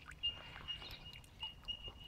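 Faint, high chirping of a small animal: short notes of one steady pitch, repeating irregularly a few times a second, with a few soft clicks.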